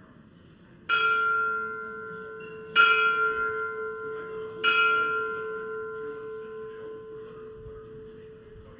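A church bell tolling three times, about two seconds apart, calling to worship. Each strike rings on, and a low hum note lingers and slowly fades after the last.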